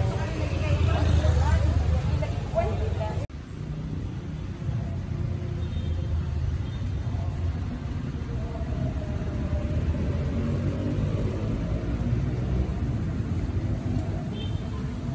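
Outdoor city street ambience: people talking nearby over a low rumble of traffic. About three seconds in it breaks off suddenly, and a quieter wash of distant voices and traffic rumble follows.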